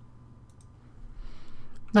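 A couple of faint computer mouse clicks about half a second in.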